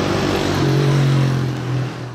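A motor vehicle passing close by on the street: its engine and tyre noise swell up, hold loudest through the middle with a steady engine note, and fade near the end.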